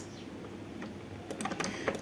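Several light, short clicks of computer input in the second half, over faint room noise.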